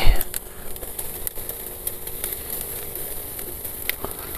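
A single knock at the very start, then beef sizzling over a charcoal grill: a steady hiss with scattered crackles and pops.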